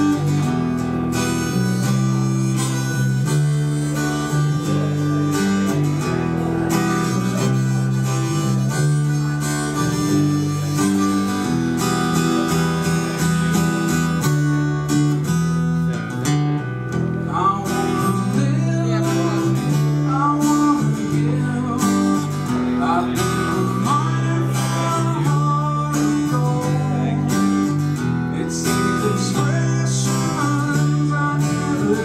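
Live folk music on acoustic guitar, chords changing steadily with a second player accompanying. A wavering lead melody joins over it about halfway through.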